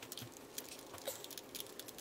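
Faint, irregular little clicks and scrapes of a precision screwdriver turning a tiny screw in the plastic housing of a battery-powered nail drill, opening its battery compartment.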